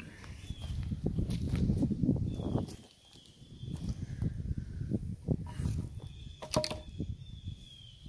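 Rotting wooden boards being moved about on soil: scraping and rustling with a few sharp wooden knocks, the loudest a quick pair late on, over rumbling handling noise on the microphone.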